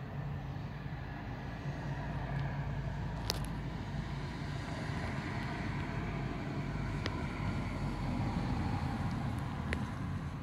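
Steady low rumble of outdoor background noise, swelling slightly near the end, with a few faint clicks.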